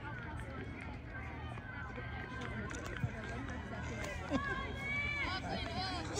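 Background chatter of distant voices, several people talking at once, over a steady low hum. There is a single sharp click about three seconds in.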